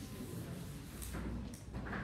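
Blackboard eraser rubbing across a chalkboard in short strokes, with a stronger swishing stretch about a second in and a brief scuff near the end.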